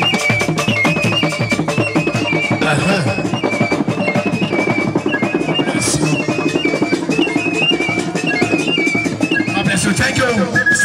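Ika traditional band music: hand drums playing a fast, dense rhythm, with a high melody moving in short steps above it.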